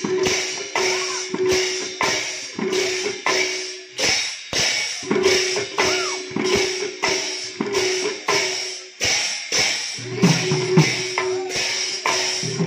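Several Odissi mrudanga barrel drums played together in a fast, evenly repeating rhythm, the treble heads ringing on one steady pitch with occasional pitch-bending strokes. Deeper bass-head strokes join in near the end.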